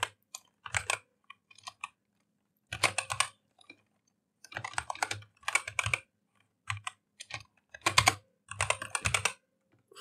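Computer keyboard typing in short bursts of keystrokes, with brief pauses between the bursts.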